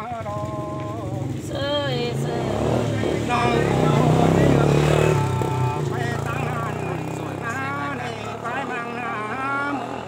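A motorcycle passing on the road, its engine hum swelling to a peak about four to five seconds in and then fading, under a person singing with long held notes.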